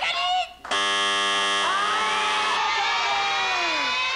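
A studio judging buzzer sounds the verdict: a steady electronic tone that starts abruptly under a second in and holds, with voices crying out over it from about halfway.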